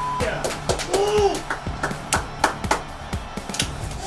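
Background music with a steady bass and a beat of sharp percussive hits, with a brief voice about a second in.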